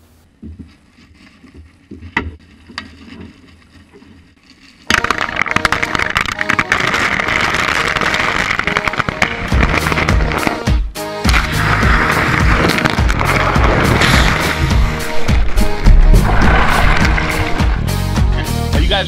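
Ice cubes poured from a plastic bag into a metal bucket, a loud dense clattering rattle that starts suddenly about five seconds in after a quiet stretch. Music with a low beat comes in underneath about halfway through.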